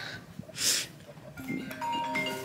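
A brief rustling hiss, then a mobile phone ringtone begins: sustained marimba-like chiming notes, in a call that is answered a few seconds later.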